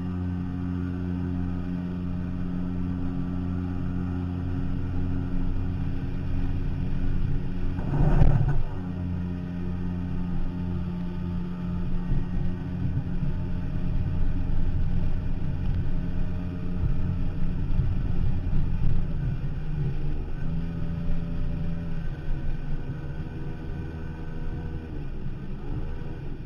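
A 14-foot Firefish Snapper jet boat's engine running steadily as the boat moves along a shallow river, with a single loud thump about eight seconds in. After the thump the engine note wavers and shifts in pitch.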